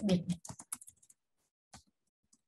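Computer keyboard typing: a quick run of keystrokes up to about a second in, then a single keystroke near the end.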